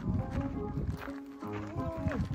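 Background music with held notes that step in pitch about halfway through.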